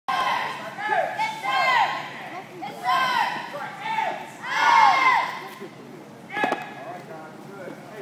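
Several children's high-pitched voices shouting in long rising-and-falling calls, overlapping one another, loudest in the first five seconds. A single sharp thump comes about six and a half seconds in.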